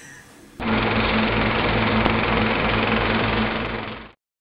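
A steady, dense buzzing rattle over a low hum, like a logo sound effect. It starts abruptly about half a second in and cuts off suddenly at the end.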